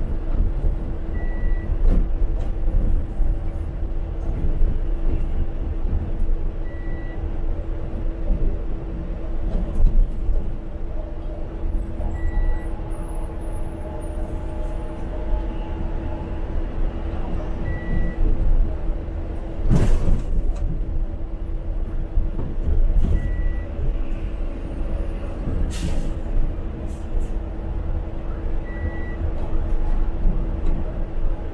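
Articulated BRT bus running along its busway, heard from inside the cabin: steady engine and road rumble under a constant hum. A short high beep repeats about every five and a half seconds, and two sharp bursts of noise come about two-thirds of the way through and a few seconds later.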